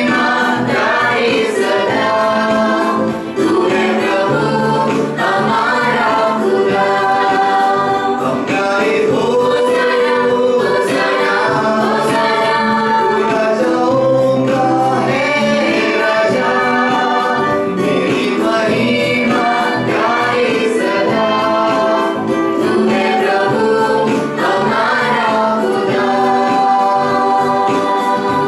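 Several male voices singing a song together in harmony, with sustained bass notes from an electronic keyboard, continuing without a break.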